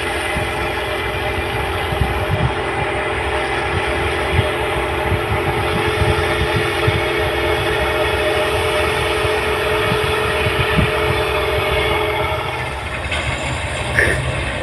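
New Holland 8060 rice combine harvester running as it harvests, a steady mechanical drone with a hum through it that drops away near the end.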